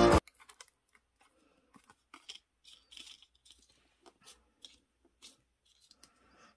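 Background music cuts off just after the start, leaving faint scattered clicks and paper rustles from fingers handling a paper circuit card and pressing small silicone pins into its holes.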